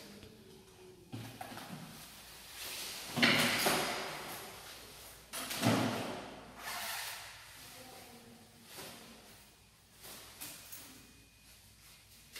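Scrapes, knocks and rustles of a person moving about: headphones coming off, a plastic chair shifting on a tiled floor as he stands, and a track jacket being pulled off. The loudest two come about three and five and a half seconds in, with fainter ones after.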